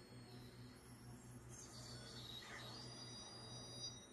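Very faint background: a steady low hum with faint, high, held tones that change about halfway through. Otherwise close to silence.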